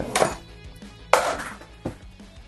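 Wooden tray drawer on Blum Movento runners being pushed shut by hand: a short sliding rush at the start, then a sharper knock and slide about a second in that dies away quickly, and a light click near the end.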